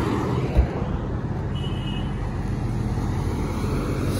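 Steady road and engine noise from a Honda City sedan driving along a highway, with a single thump about half a second in.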